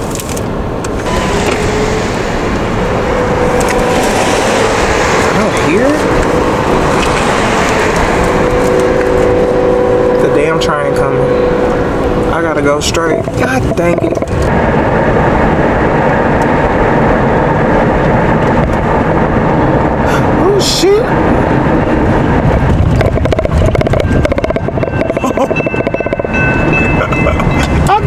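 A train horn sounds twice in long, steady chords over a loud, constant rumble heard from inside a moving car.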